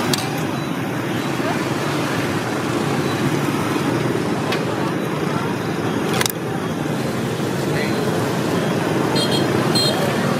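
Steady street traffic noise with background voices, and one sharp click about six seconds in.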